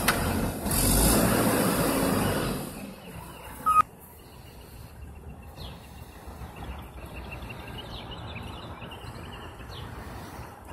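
Front-load garbage truck's engine running loudly for the first few seconds, then dropping away sharply. About halfway in a single short beep sounds, followed by quieter engine and street background with faint bird chirps.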